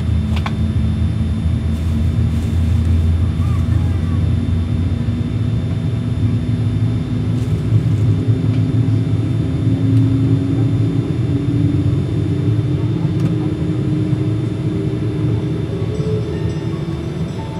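Boeing 787-9 Rolls-Royce Trent 1000 turbofan engine starting, heard inside the cabin: a steady low rumble with a whine slowly rising in pitch as the engine spools up.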